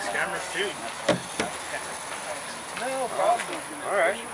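Background voices of people talking outdoors, with two sharp knocks a little after a second in.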